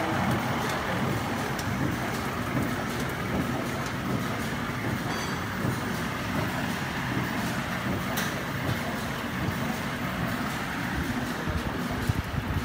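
Sterilization pouch making machine running steadily: a continuous mechanical din scattered with faint short clicks, one louder click about eight seconds in.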